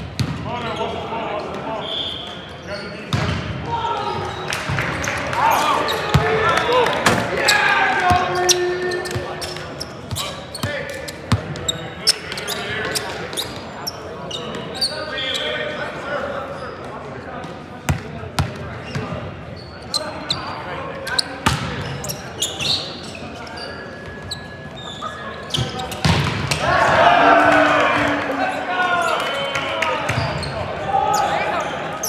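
Volleyball rally on a hardwood gym court: sharp smacks of the ball being hit and landing, with players shouting and calling to each other in the echoing hall. Near the end several players shout together.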